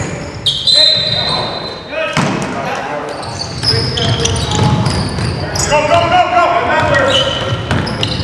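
Live basketball game sounds in a gym: a basketball bouncing on the hardwood floor, a sharp high sneaker squeak about half a second in, and players' voices calling out, all echoing in the large hall.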